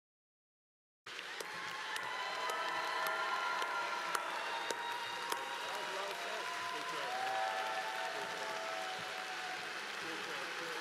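Audience applauding and cheering, with many voices calling out over the clapping; the sound cuts in abruptly about a second in.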